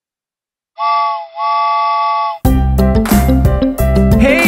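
Cartoon steam-train whistle, a chord of several tones, blown twice: a short blast, then a longer one of about a second. About two and a half seconds in, the backing music of a children's song starts.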